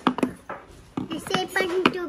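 People talking, a child's voice among them, with a few sharp clicks in the first half second.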